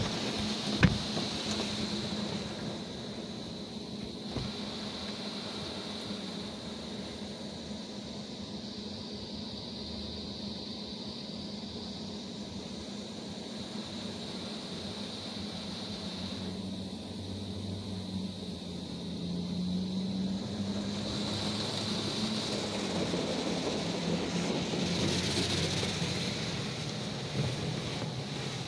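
Spray from a Mark VII AquaJet XT automatic car wash drumming on a car's body and glass, heard muffled from inside the cabin, over a steady low hum. One sharp click comes about a second in. The spray grows louder from about two-thirds of the way through as it passes closer.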